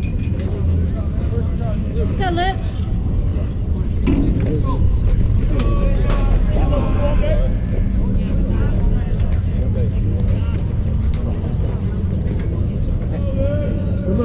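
Open-air ballfield ambience: a steady low rumble with scattered distant voices calling and chattering across the field.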